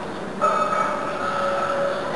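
A loud, drawn-out shout, held on one pitch for about a second and a half, starting about half a second in, during a heavy bench-press attempt.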